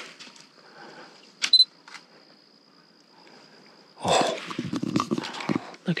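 A single sharp camera shutter click about a second and a half in, over a faint steady high-pitched whine. From about four seconds, louder irregular scuffing and rustling handling noise.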